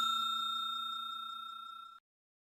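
Bell-like chime sound effect for a subscribe button, ringing out with a clear high tone and fading steadily with a slight fast pulsing. It cuts off suddenly at the end.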